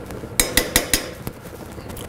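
A spoon clinking sharply several times in quick succession as butter is spooned into a stainless-steel pot, with the clinks bunched about half a second to a second in.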